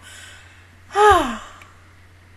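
A woman's short voiced sigh about a second in, falling in pitch, after a soft breath.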